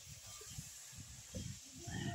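A man drinking from a mug held close to the microphone: a few soft low gulping thumps, then a short vocal sound, as of a breath out after drinking, near the end.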